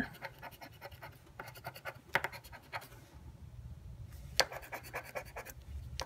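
Scratch-off lottery ticket being scratched with a metal edge: runs of short, quick scraping strokes, with a pause of about a second in the middle and a few sharper strokes.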